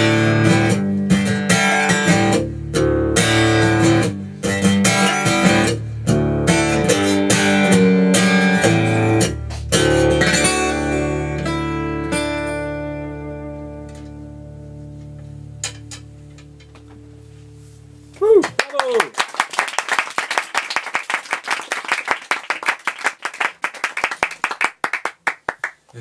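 Acoustic guitar strumming the closing bars of a song, ending on a chord that rings out and fades over several seconds. About eighteen seconds in, the audience breaks into applause that lasts to the end.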